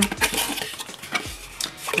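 Corrugated cardboard mailer box being opened and handled, its flaps rustling and scraping, with a few short light clicks and taps spread through.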